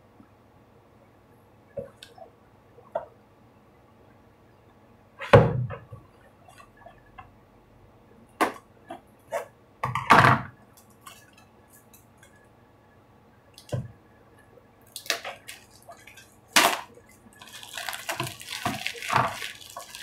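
A cardboard tea box being handled and opened on a wooden table: scattered taps and clicks, with two louder knocks about a quarter and halfway through. In the last few seconds comes continuous crinkling as a tea bag's plastic wrapper is handled.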